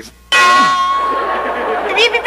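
A comic clanging bell sound effect, struck once about a third of a second in and ringing on as it slowly fades, dubbed in for a knuckle rap on the head.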